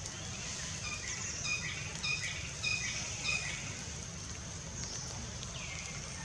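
Birds calling in the trees: one bird repeats a short pitched note four times, about twice a second, in the middle, with a few falling whistled calls around it. Under the calls run a steady high hiss and a low rumble.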